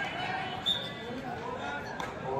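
Mixed voices of players and spectators at a kabaddi match, with a short sharp impact-like sound about two-thirds of a second in.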